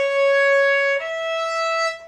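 Violin playing two held bowed notes about a second each, the second a step higher: second finger then fourth finger on the same string, skipping the third finger.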